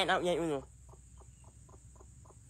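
A young man's exaggerated sung 'ah' vocalising, wavering up and down in pitch, breaking off about half a second in. Then only faint quick ticks, about five a second.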